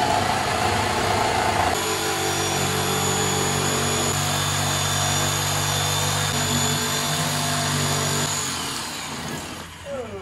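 Corded handheld power tool running steadily as it cuts into a drywall wall. Its sound changes about two seconds in, and it winds down shortly before the end.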